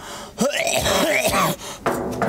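A person's drawn-out, wavering vocal moan with breathy gasps, its pitch sliding up and down, followed by a sharp click near the end.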